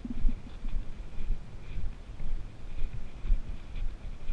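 A hiker's footsteps and trekking-pole taps on a leaf-littered dirt trail, about two steps a second, with low thuds as the body-worn camera jostles with each stride.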